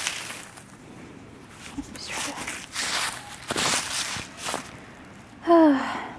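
Dry fallen oak leaves rustling and crunching in several short bursts as they are scooped and brushed aside by hand. Near the end a short voice sound falling in pitch stands out as the loudest moment.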